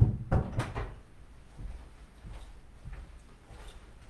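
A few quick knocks and thumps in the first second, then faint shuffling as a person moves about a small office.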